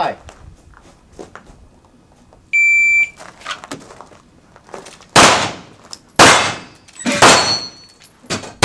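An electronic shot timer gives its half-second start beep. About two seconds later a handgun fires three shots roughly a second apart, and the third is followed by the ring of a hit steel target.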